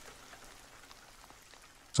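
Soft, steady rain with a faint patter of individual drops.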